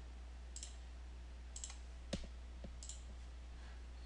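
A handful of light computer mouse clicks, about five spread across the few seconds, over a steady low electrical hum.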